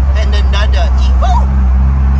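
Steady low drone of a 2003 Mitsubishi Lancer Evolution's turbocharged 2.0 L four-cylinder (4G63) rolling at low speed, heard from inside the cabin, with brief snatches of voices over it.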